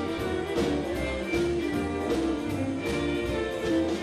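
Live western swing band playing an instrumental passage: fiddle, steel guitar, guitar and horns over a steady beat.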